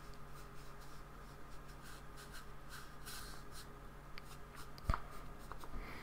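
Flat paintbrush dabbing and scraping acrylic paint across paper in faint, scratchy strokes, with one sharp light tap about five seconds in.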